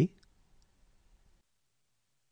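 The last of a spoken letter right at the start, then near silence with a few faint clicks in the first half second, before the sound drops to nothing.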